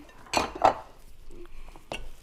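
Wooden rolling pin working pastry dough on a plastic cutting board, with two loud clattering knocks within the first second and a sharp click near the end.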